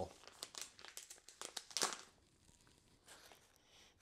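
Foil-lined coffee pouch crinkling as it is handled and opened: a run of small crackles, the loudest just under two seconds in, then it goes faint.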